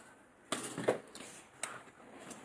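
Faint handling sounds of an open ring-bound planner: a few soft clicks and rustles as hands move over its cover and lining.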